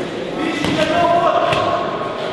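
Several sharp thuds of gloved punches exchanged in a boxing clinch, with voices calling out in a reverberant sports hall.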